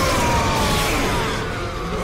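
Television battle sound effects: explosions with several descending whistling sweeps over a dense rumbling noise.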